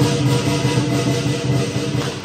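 Loud lion dance music: drum and crashing cymbals played together.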